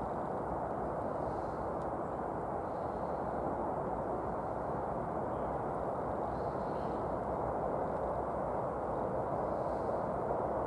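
Steady outdoor background noise: an even, unbroken rumble with no distinct events.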